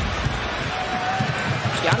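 Basketball being dribbled on a hardwood court, a run of bounces, over the steady noise of an arena crowd.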